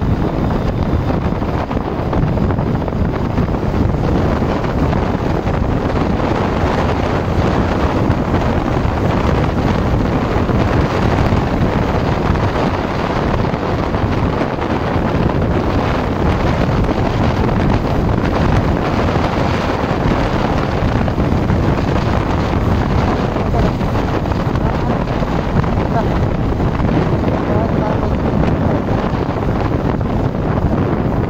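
Steady wind rush on the microphone of a Yamaha Sniper 155 motorcycle riding at speed, with its engine and road noise underneath.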